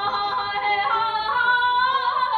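A woman singing Persian classical vocal (avaz) in Abuata: a held note that wavers with ornament, then moves up to a higher sustained note about a second in.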